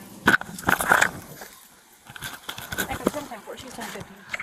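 Struggle heard on a police body camera: loud knocks and rubbing as the camera is jostled and pulled off, with brief voices in the first second, then scattered clicks and scraping.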